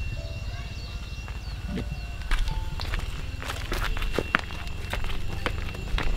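Footsteps of a few people walking on a dirt path: irregular steps that start about two seconds in and go on to the end.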